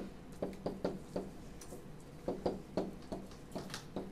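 A stylus tapping and scraping on a pen screen as words are handwritten: a run of irregular light clicks, a few each second.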